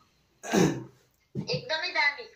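A man clearing his throat once, a short rough burst, and then a voice starts up about a second later.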